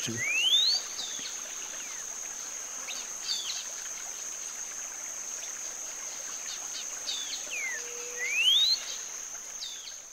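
Cinnamon-bellied saltator singing rising whistled phrases that each sound like a question, one near the start and another about eight seconds later, not repeated back to back. A steady high-pitched drone runs behind.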